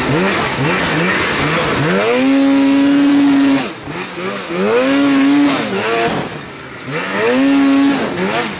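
Polaris Axys RMK snowmobile's two-stroke engine under hard acceleration on a hillclimb. It begins with quick throttle blips, about two a second, then holds at high revs. The throttle is chopped and reopened twice, around four and six seconds in.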